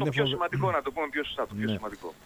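Speech only: a man talking on a radio talk show.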